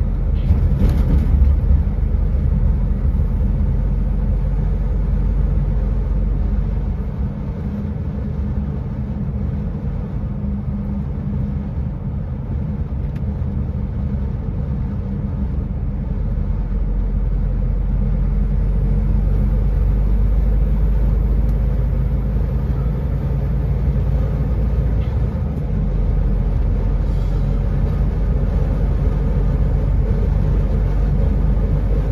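A vehicle's engine and road noise heard from inside the cab while driving at steady speed on a highway, a continuous low drone. It eases a little about a quarter of the way in and comes back up about halfway through.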